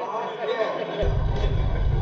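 Men's voices with crowd chatter from the battle rap footage. About a second in, a steady low rumble comes in under them.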